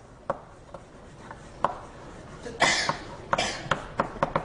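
Chalk writing on a blackboard: sharp taps as the chalk meets the board, then two longer scratchy strokes a little past the middle, and more taps near the end.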